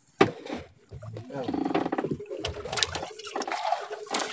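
A single sharp knock about a quarter second in, then a person's low, wordless voice sounds running on for the rest of the time.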